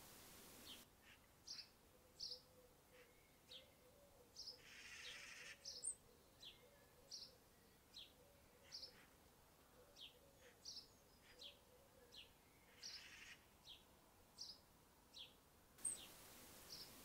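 Very faint outdoor night ambience with short, high chirps, like a small bird calling, repeating every half second to a second.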